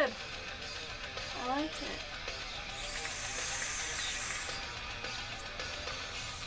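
Vape being drawn on: a steady high hiss of air pulled through the atomizer as the coil fires, lasting about a second and a half from about three seconds in.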